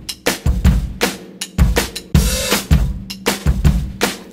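Drum-kit intro of a pop song: a steady, driving beat of bass drum and snare, with no singing yet.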